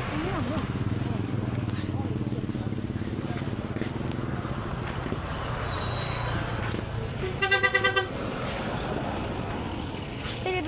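A vehicle engine running on the road, then a horn sounding for most of a second, about seven and a half seconds in, with a rapid pulsing tone that is the loudest sound here.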